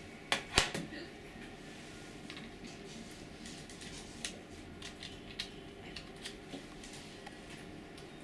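A USB plug clicking into a laptop's port about half a second in, followed by scattered light clicks and taps of hands handling the laptop and an external slot-load DVD drive.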